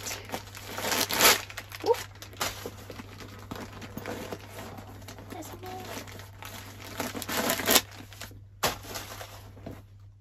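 Packing material from a new backpack being crumpled and handled, crinkling on and off, loudest about a second in and again near the end.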